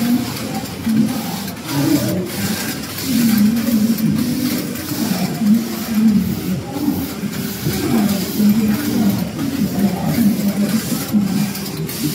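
KSC093A three-system, 18-gauge computerized flat knitting machine running, its carriage shuttling across the needle bed with a mechanical whir and scattered clicks.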